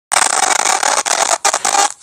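Loud, harsh, distorted noise that breaks off briefly a few times.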